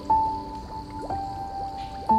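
Slow, soft piano music, a note or chord struck about once a second and left to ring, mixed with a water track of small drips.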